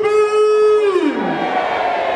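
A long, drawn-out shouted cheer through a microphone and PA, one voice held on one pitch for about a second and then falling away: the call of a "hip hip, hooray" round of cheers.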